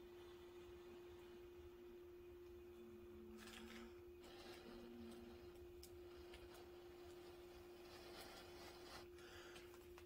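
Near silence: a man blowing softly into a paper cone to fan smouldering char cloth into flame, heard as two faint breathy gusts about three and a half and eight and a half seconds in. A faint steady hum sits underneath.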